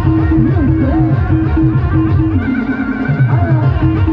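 Loud amplified live band music: a fast, steady beat under a melody line. The beat drops out for about a second past the middle and comes back just after three seconds in.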